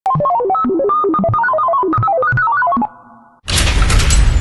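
Intro logo jingle: a fast melodic run of single bright notes, about eight a second, like a phone ringtone. The run stops just before three seconds. About three and a half seconds in, a loud, dense noisy hit comes in.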